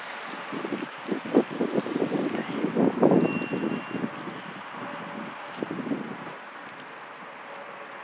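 Gusts of wind buffeting the microphone in irregular bursts, strongest about one and a half and three seconds in, with a smaller gust near six seconds, over a steady outdoor hiss.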